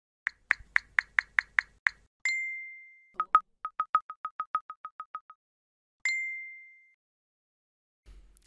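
Messaging-app style sound effects: a quick run of about eight typing-like clicks, a bright notification ding that fades over about a second, and two sharper clicks. Then comes a rapid string of a dozen short blips, and a second ding about six seconds in.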